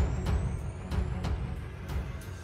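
Cinematic intro music: sharp drum hits about three a second over deep bass, with a thin high tone slowly rising in pitch. The loudness eases off toward the end.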